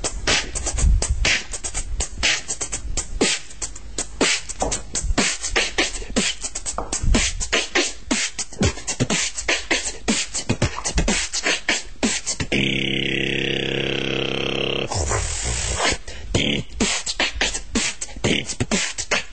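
Vocal beatbox break: a fast, dense rhythm of mouth-made kicks, snares, claps and hi-hat shuffle. Past the middle it gives way for about two and a half seconds to a held buzzing note with a falling whistle over it, then a short hiss, before the beat comes back.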